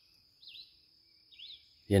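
Faint bird chirps: a few short calls, over a thin steady high tone.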